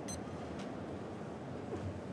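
Low, steady room noise in a cathedral during a pause, with a faint click just after the start.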